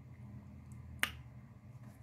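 Tarot cards being handled in the hands, giving one sharp click about a second in over a faint low room hum.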